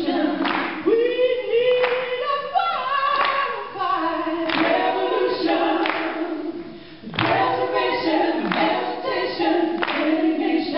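A woman and a man singing a cappella into microphones, with handclaps keeping a slow, steady beat of about one clap every second and a half.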